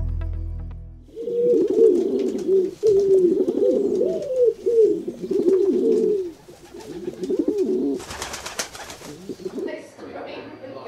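Pigeons cooing, a run of repeated, overlapping coos, after a music sting fades out in the first second. A short clattering burst comes near the end.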